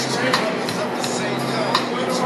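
High-heeled footsteps clicking on pavement, about one step every 0.7 seconds, over steady city street noise and a low hum.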